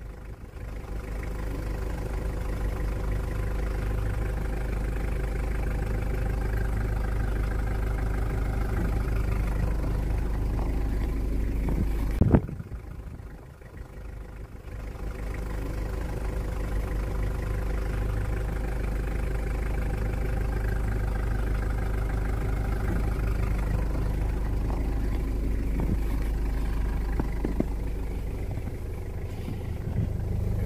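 Car engine idling steadily. There is a single sharp knock about twelve seconds in, then a short quieter spell before the steady running returns.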